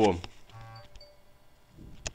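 A desktop messaging app's notification chime, a short steady tone lasting about half a second, followed near the end by a single click.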